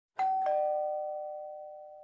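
Two-note ding-dong doorbell chime: a higher note, then a lower one a quarter second later, both ringing on and slowly fading.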